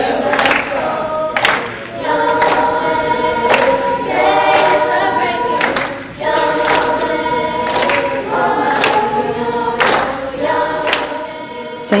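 A school choir singing in held, sustained notes, with a brief dip in level about six seconds in.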